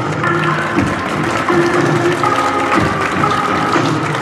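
Music: held melodic notes that step between a few pitches, over low percussion strokes.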